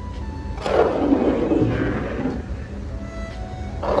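Background music over the scraping and rustle of long-handled spade spatulas turning cabbage and pork in a huge iron wok, with two louder swishes of the stirring, about half a second in and near the end.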